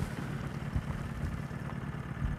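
Steady low hum of a fishing boat's outboard motor idling.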